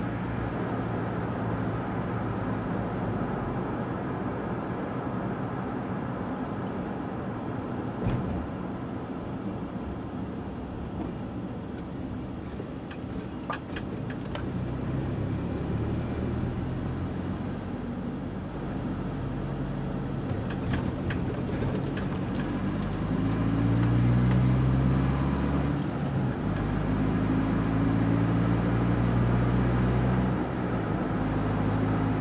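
Car engine and tyre noise heard from inside the cabin while driving, a steady low rumble. In the second half the engine note grows louder and rises a little, as the car accelerates.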